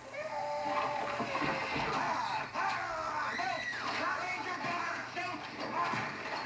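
An infant crying in wavering, gliding wails, played back through a television's speaker.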